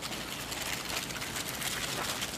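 Potting soil being rubbed and pushed by hand into plastic cell-pack trays to fill the cells: a soft, continuous rustling scratch with many small scrapes.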